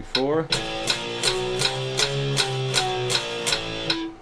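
Electric guitar playing three-note power chords, one per beat, climbing chromatically and then stepping back down (A5 up to C#5 and back), over metronome clicks at 160 beats a minute.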